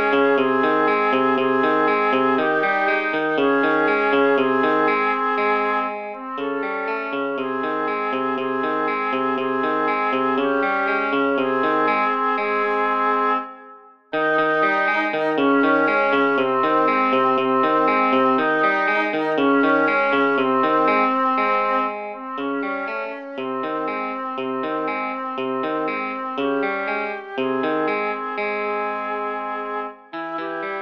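MuseScore 3 playback of a hymn arranged for flute, oboe and electric guitar: flute and oboe hold long notes over a steady running arpeggiated electric guitar line. The music breaks off briefly about halfway through, then resumes.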